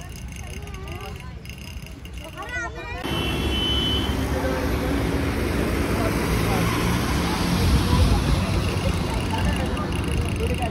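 Faint voices for the first few seconds, then road traffic: a loud, steady rush of cars passing on a road, swelling around eight seconds in.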